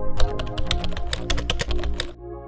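A fast run of computer-keyboard typing clicks, used as a sound effect, that stops suddenly near the end, over electronic background music.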